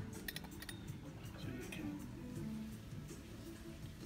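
A few light clinks of porcelain and glass tableware, clustered about half a second in with a couple more later, over soft background music.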